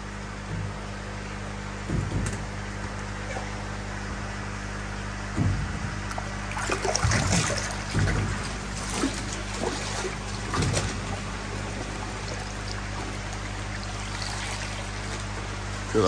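Water splashing and sloshing in a koi holding vat as a net is worked through it and koi thrash, with several irregular splashes, busiest in the middle, over a steady trickle and a low hum.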